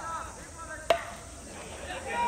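Metal baseball bat striking a pitched ball once about a second in: a sharp crack with a short ring.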